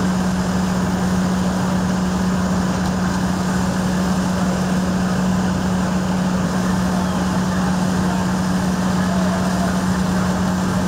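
Fire apparatus engine running steadily at constant speed: a steady low hum over an even wash of noise.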